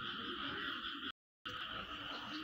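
Steady background chorus of calling animals, heard as an even, chirring texture with no single call standing out, cut by a brief dropout to complete silence just past a second in.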